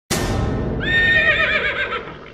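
A horse whinnying: a sudden breathy start, then a long, quavering neigh that wobbles in pitch and trails off near the end.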